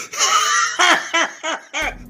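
A man laughing hard: a loud, high-pitched opening burst, then a run of about six quick "ha" pulses that trail off.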